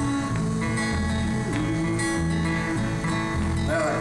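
Acoustic guitar strummed in a steady country-folk rhythm, with a bass guitar line changing note about every half second underneath, in an instrumental break between verses.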